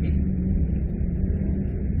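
Steady low rumble and hum with a faint hiss above it, an even background noise with no strokes or changes.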